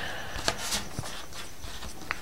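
Faint handling sounds of a carbon-skinned foam-core glider wingtip being turned in the hands, with a couple of light ticks about half a second and a second in.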